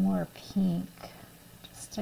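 A woman's voice murmuring under her breath: two short voiced sounds in the first second, then soft whispery hisses.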